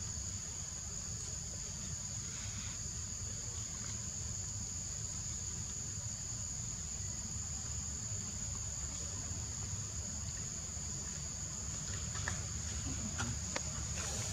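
Insects singing in a steady, unbroken high-pitched drone over a low rumble, with a few faint clicks near the end.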